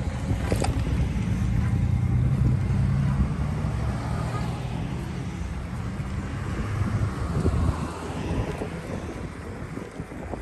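Wind buffeting the microphone of a camera moving along on a bicycle, a steady low rumble, with bicycle tyre noise on the paved path. A single sharp click comes about half a second in.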